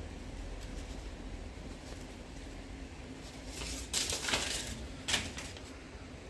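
Paper banknotes rustling as they are let go and land in a plastic tub: a longer rustle about four seconds in and a short one about a second later.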